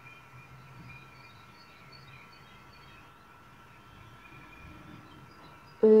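Quiet room tone with a faint steady high-pitched hum; no distinct handling sounds stand out.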